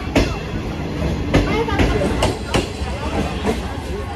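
A green-liveried passenger train rolling past on the track, with a low rumble and its wheels knocking over rail joints a few times, irregularly.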